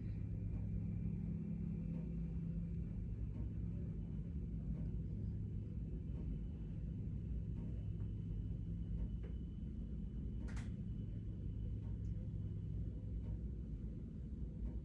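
Quiet room tone: a steady low hum, with one faint click about ten and a half seconds in.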